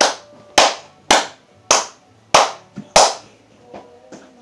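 A person clapping their hands: six sharp claps a little over half a second apart, stopping about three seconds in.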